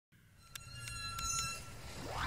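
Edited intro sound fading in over the title card: a low hum swelling up under a few thin, steady high ringing tones, with four sharp ticks spaced a fraction of a second apart.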